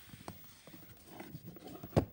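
A plastic VHS case being handled and turned over on a wooden surface: soft rubbing and scraping, then a sharp knock as the case is set down just before the end.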